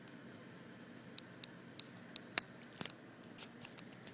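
A series of about five sharp, separate clicks, the loudest about two and a half seconds in, followed by a few softer scuffing or rustling sounds near the end.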